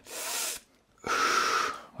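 A person breathing audibly in a demonstration: a short sharp intake of breath, then after a brief pause a longer puff of air blown out through the lips. It is the breath a musician who holds his breath through a phrase lets out between phrases.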